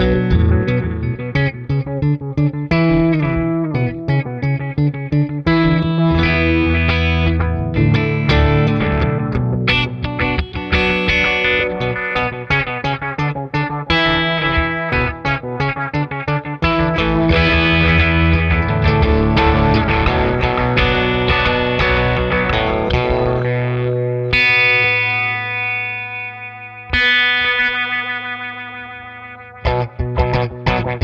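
Electric guitar (a Les Paul) played through a Chase Bliss Thermae analog delay pedal into a Fender Deluxe Reverb amp, with the pedal's low-pass filter ramping for a sweeping, phaser-like tone. Busy phrases run through most of the passage; near the end two held chords ring out and fade with a wavering sweep.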